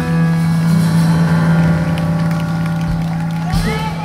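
Live jazz band holding a sustained final chord, closing with a couple of low drum hits about three seconds in. Near the end a voice whoops as the song finishes.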